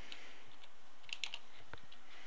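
A few slow computer keyboard keystrokes, short separate clicks clustered about a second in, over a steady background hiss.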